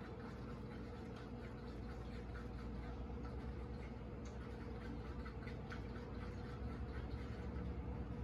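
Fork whisking raw eggs in a paper bowl: faint, irregular light ticks and scrapes over a steady low hum.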